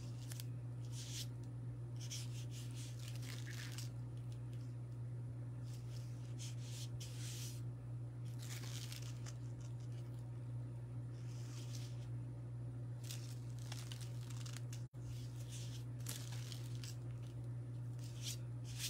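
Green vinyl adhesive stencil sheet being peeled up and pressed back down while it is lined up on a wood round: short rustling, peeling sounds every second or two. A steady low hum sits under it.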